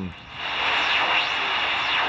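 Shortwave receiver's speaker hissing with static, starting just after the talk stops, with faint repeating sweeping 'chirp, chirp' tones over the hiss. The chirps are 4 MHz CODAR ocean-wave radar coming through as an image on the single-conversion receiver and interfering with the 80 m band.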